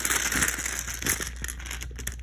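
Handling noise: a hand rubbing and brushing against the phone, with rustling and many light clicks, loudest at the start.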